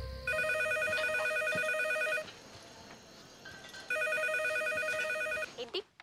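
Telephone ringing with a fast electronic trill: two rings of about two seconds each, with a pause of under two seconds between them.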